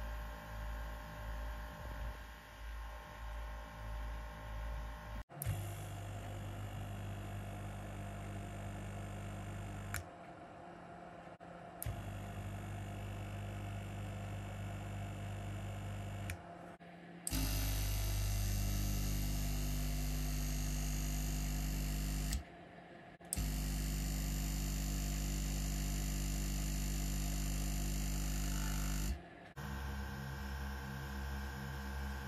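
Small airbrush compressors running in turn. For about the first five seconds a quiet compressor at its lowest 0.06 MPa setting gives a low, pulsing hum. Next comes the steady, higher hum of a GSI Creos Mr. Linear Compressor Petit-Con, and from about 17 s a louder compressor hums steadily, with two short cuts in the sound.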